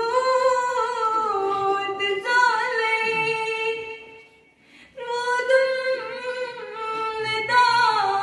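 Unaccompanied female singing of a Kashmiri naat into a microphone, long held melodic notes with a brief breath pause about halfway through before the line resumes.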